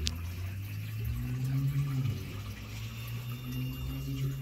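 Home aquarium's water running steadily, with a low hum underneath, typical of the tank's filter. A single sharp click comes right at the start.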